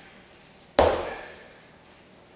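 A kettlebell is set down on a wooden floor about a second in. It gives one heavy thud with a short metallic ring that dies away.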